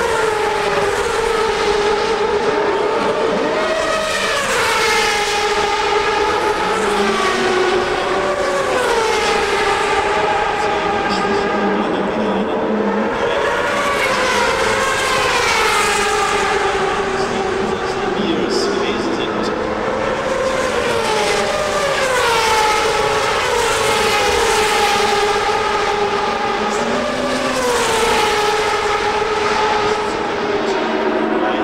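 CART Champ Car turbocharged V8 racing engines passing one after another at speed. Each pass rises and then drops in pitch as the car goes by, several times over.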